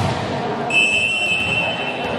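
A referee's whistle gives one long, steady, high blast starting under a second in, the signal for the serve, over voices echoing in a sports hall.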